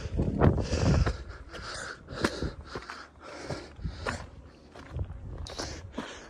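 A hiker breathing hard while climbing, in repeated hissy breaths, with footsteps and scrapes on rock and loose stone.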